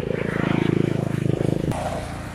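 A motor vehicle's engine running close by with a rapid, even pulse. It grows louder through the first half second and drops away abruptly near the end.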